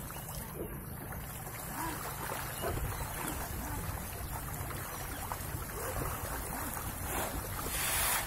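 Pangasius catfish splashing and churning at the pond surface in a feeding frenzy, with wind rumbling on the microphone. Near the end, a thrown handful of feed pellets hits the water with a brief spattering hiss.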